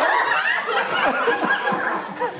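A group of people laughing and chuckling together, many voices overlapping.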